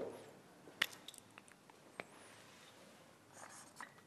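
Faint handling noise of a digital stopwatch and other small objects set down on a wooden bench: a couple of sharp clicks, about a second in and again about two seconds in, then a short scratchy rustle near the end.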